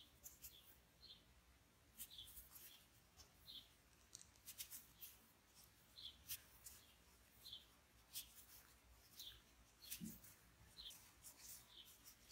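Near silence with faint, short squeaks and ticks about once a second: T-shirt yarn drawn through a plastic crochet hook while a starting chain is crocheted.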